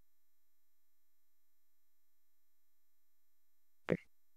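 Near silence: only a faint steady electronic tone, with one brief soft sound just before the end.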